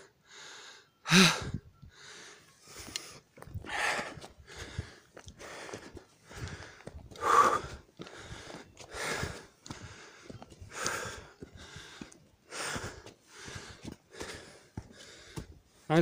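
Heavy, rapid breathing of a hiker out of breath on a steep climb, about two breaths a second, with a short voiced grunt about a second in.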